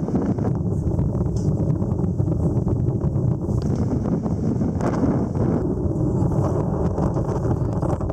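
Strong wind buffeting the microphone on the deck of a sailing ship, a loud, steady low-pitched noise. A faint steady hum comes in twice, for about three seconds each time.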